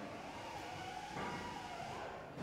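A faint tone wavering slowly up and down in pitch over steady background noise in a production hall.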